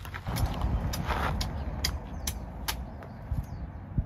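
A machete hacking into a green coconut on a wooden stump: a run of sharp knocks roughly half a second apart, over low wind rumble on the microphone.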